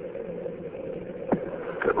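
Steady hiss and hum of a radio voice channel between transmissions, with a short click about two-thirds of the way in. A man's voice comes in over the radio at the very end.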